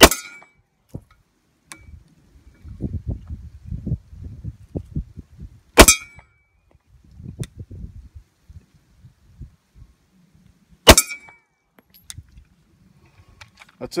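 Three pistol shots from a Sig Sauer P320, about five seconds apart, each with a short ringing tail. A low rumbling noise runs between the shots.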